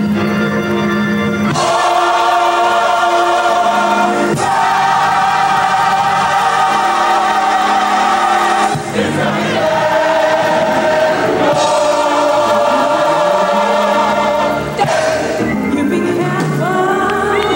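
Gospel choir singing, holding long chords that change every few seconds.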